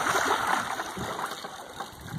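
A hooked alligator gar thrashing at the water surface, splashing loudest at the start and dying away.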